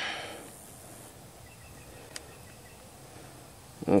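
Quiet outdoor background with one small sharp click about two seconds in.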